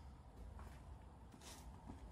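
Near silence: outdoor background with a low rumble and a couple of faint rustles.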